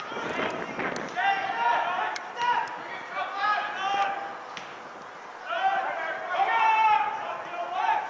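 Shouted voices during a soccer game, calling out in several separate bursts but too distant to make out, with a few short sharp knocks in between.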